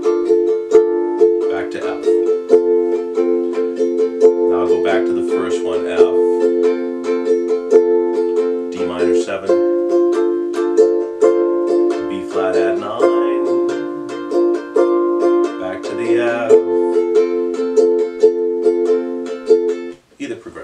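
Ukulele strumming chords in a steady rhythm, moving through an F, D minor and B-flat progression with a chord change every few seconds.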